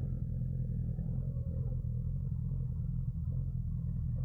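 Motorcycle engine idling steadily, a low, even sound.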